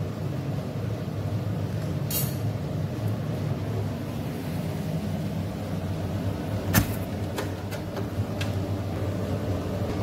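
A steady low hum, with one sharp knock about seven seconds in and a few fainter clicks after it.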